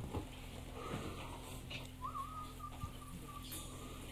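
Low steady electrical hum from the stage amplifiers while the band gets ready, with a thin high tone that wavers, rises about halfway through and then holds.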